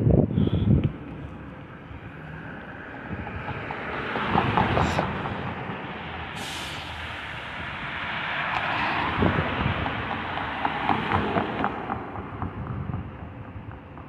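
City street traffic driving past: a bus and cars going by, the sound swelling about four seconds in and again from about eight to eleven seconds.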